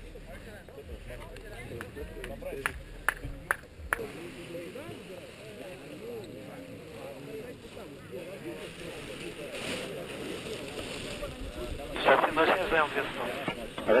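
Background chatter of several people's voices, with a low wind rumble on the microphone for the first few seconds and a few sharp clicks about three seconds in. A louder nearby voice comes in near the end.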